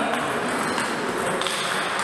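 Table tennis ball clicking as it is served and struck, bouncing on the table and off the rubber paddles, over a steady background hum of the sports hall.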